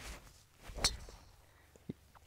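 A golf club striking a ball off the tee: one sharp crack about a second in.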